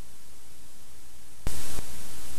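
Steady hiss and static of old videotape with a low hum underneath. About one and a half seconds in comes a sudden, brief, louder burst of static, after which the hiss carries on a little louder.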